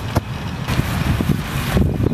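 Wind rumbling and buffeting on the microphone, with a couple of short knocks.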